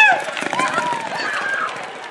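Spectators shouting and whooping in short cries, then fading into general crowd noise.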